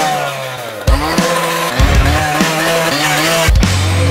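Two-stroke handheld power saw revving in repeated bursts, its pitch climbing with each blip, over loud music with heavy low hits.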